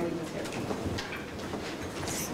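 Handling noise from a clip-on lapel microphone: rubbing and several small knocks as the mic is unclipped from clothing and passed to the next speaker.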